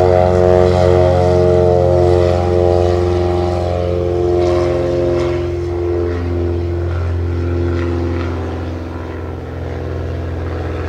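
Britten-Norman BN-2 Islander twin-engine propeller aircraft on its takeoff roll, engines at full power. The pitch sinks slightly and the sound fades a little as the plane moves away.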